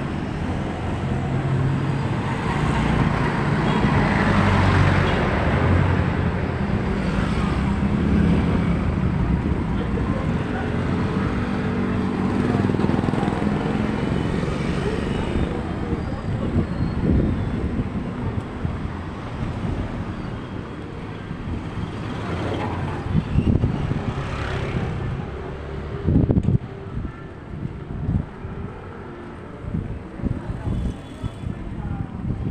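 Street traffic: a small motorcycle engine runs close by through roughly the first half, over the general noise of the road. Later it grows quieter, with a few sharp thumps near the end.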